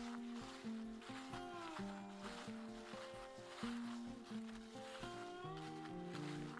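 Background music: a light instrumental melody over a steady beat.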